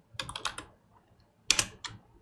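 Typing on a computer keyboard: a quick run of keystrokes in the first half second, then two louder key presses near the end.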